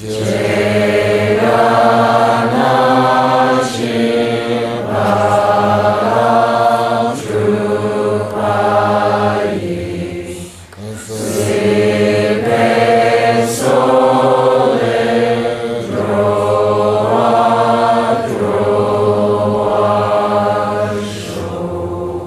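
A roomful of voices chanting a Buddhist prayer together in unison on sustained pitches. The chant runs in long phrases, with a brief pause for breath about ten seconds in.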